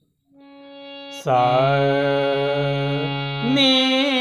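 Harmonium reeds sounding a held note that swells in faintly as the bellows are worked. From about a second in, a man sings a long held swara along with it, and the pitch moves to a new held note near the end.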